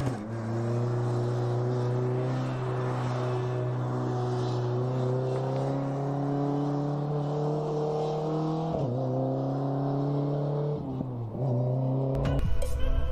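BAC Mono's four-cylinder engine pulling under acceleration. Its note climbs slowly through a long gear, then dips sharply on an upshift about three-quarters of the way through and again near the end.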